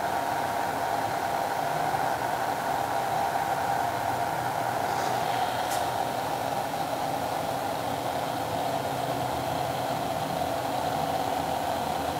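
A cooling fan running with a steady whir and hum, with a faint click a little before six seconds in.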